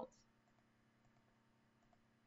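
Near silence: faint room tone with a couple of soft computer mouse clicks.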